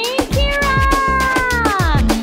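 A long, drawn-out meow-like animal call that holds its pitch and then slides down near the end, over background music with a steady beat.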